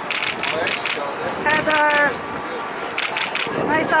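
Photographers shouting to a celebrity over street noise, with one long shouted call about a second and a half in and more voices near the end.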